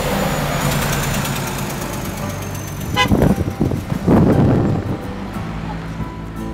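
A motor vehicle's engine running, with a short horn toot about three seconds in, followed by two louder surges of noise.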